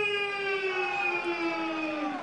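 Ring announcer's voice over the microphone, drawing out one long held call that falls slowly in pitch and ends near the end.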